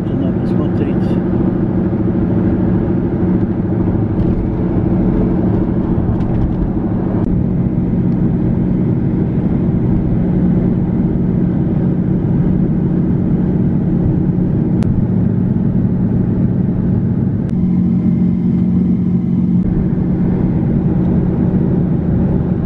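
Steady road noise and engine hum of a moving car, heard from inside the cabin.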